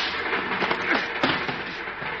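Radio-drama sound effects of a fistfight: two sharp blows land, one at the start and one just over a second in, with short grunts between them, over the steady running noise of a train.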